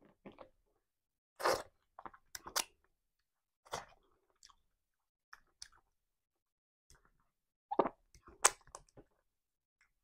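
Close-miked eating sounds: fingers working through amala and tomato stew, and chewing, in short separate bursts with silence between. The loudest bursts come about one and a half seconds in and near eight seconds.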